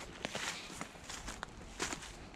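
Footsteps in dry fallen leaves: a few uneven crackling steps.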